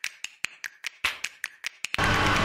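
A quick run of sharp, dry clicks, about five or six a second and unevenly spaced.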